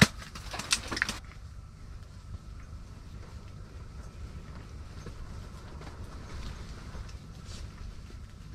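A few sharp clicks and knocks in the first second, then a steady low rumble with a faint thin hum above it.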